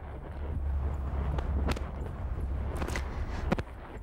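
Horse trotting on a sand arena: a few sharp knocks over a steady low rumble, which fades shortly before the end.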